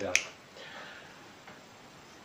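One sharp click just after the start, over faint room tone.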